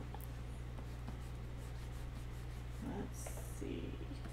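Wacom pen scratching on the drawing tablet in faint short strokes, over a steady electrical hum, with a brief low murmur about three seconds in.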